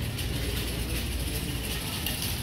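Steady background noise of a large store: a low rumble with an even hiss, no distinct events.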